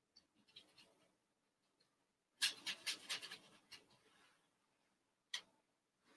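Paintbrush rubbing and scrubbing, on canvas and on a paint palette. Faint scratching at first, then a louder run of quick scrubbing strokes about two and a half seconds in, and a single sharp click near the end.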